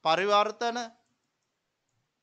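A man's voice speaking for just under a second, then cutting off into dead silence.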